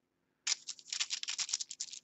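Flat paintbrush scrubbing acrylic paint onto a foil-covered palette: a fast run of dry, scratchy brush strokes that starts about half a second in.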